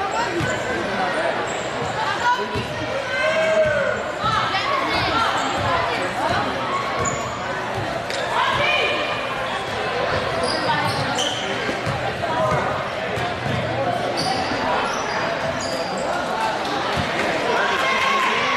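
Basketball dribbling on a hardwood gym floor during live play, in a reverberant gym, with scattered voices of players and spectators calling out.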